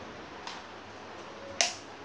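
Two sharp clicks over quiet room tone: a faint one about half a second in and a louder one near the end.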